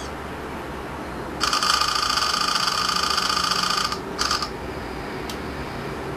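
Onda V972 tablet camera's shutter sound from its speaker, repeating rapidly as a continuous bright chatter for about two and a half seconds, then a short second burst just after: burst-mode shooting. A steady low hum lies underneath.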